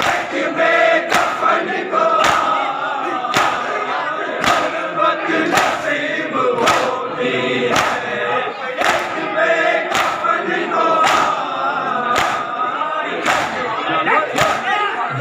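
A crowd of men chanting a Shia mourning lament (nauha) together. Throughout it, massed open-hand chest-beating (matam) lands in unison as sharp slaps, about one a second.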